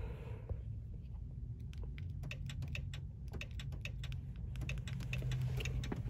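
Irregular light clicks and taps of handling, over the low, steady run of the car's engine idling after being started with the smart card.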